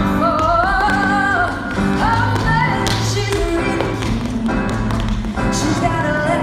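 Tap shoes striking the stage floor in sharp clusters during a tap solo, clearest in the second half, over a loud recorded pop song with a woman singing.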